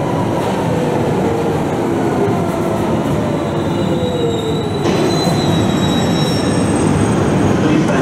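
London Underground train slowing, its motor whine falling steadily in pitch over rumbling wheel noise, with thin high-pitched wheel or brake squeals joining about halfway through.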